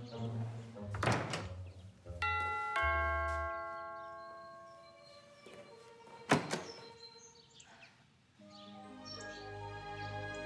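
Two-tone doorbell chime ringing once, ding-dong, the second note lower, about two seconds in, the tones fading slowly. A sharp thump comes a few seconds later, over soft background music.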